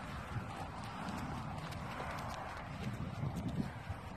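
Footsteps on dry, stony dirt as a person and a leashed dog walk, over a faint steady hiss.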